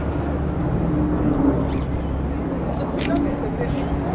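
Outdoor city noise on a bridge: a steady low rumble of road traffic with an engine hum that comes and goes, and brief snatches of passers-by talking. No bell strikes; Big Ben stays silent while its tower is under renovation.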